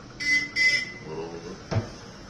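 Two short high-pitched squeaks, then a single thump near the end as a wooden barber-station cabinet door is swung shut.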